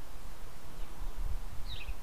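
Low, steady rumbling background noise, with one brief falling bird chirp near the end.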